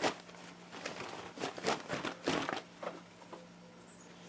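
A cotton T-shirt being handled and opened out: a series of short rustles and flaps of fabric, the sharpest right at the start, over a faint steady low hum.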